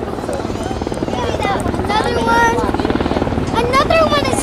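Helicopter flying overhead, its rotor beating in a rapid, steady chop, with people talking close by.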